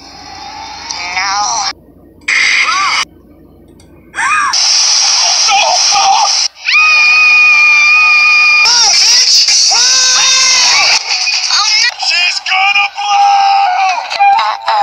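Cartoon soundtrack played through a screen's speakers: high-pitched character voices and music in short clips that cut off abruptly every second or two. A held high voice or note runs for about two seconds near the middle.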